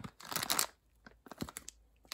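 Clear plastic bag around model kit parts crinkling as it is handled, with a burst of rustling in the first half second or so, then a few light clicks and taps.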